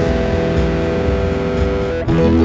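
Rock music with electric guitar: a band holding long sustained notes, changing to new notes right at the end.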